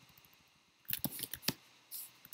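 Computer keyboard keystrokes: a short run of sharp key clicks starting about a second in, the last one the loudest.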